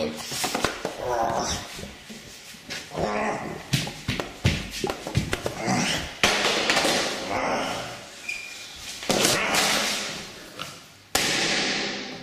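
Handling noise from a camera carried with its lens covered. Rustling and scraping with scattered knocks, and several louder rushes of rustling in the second half.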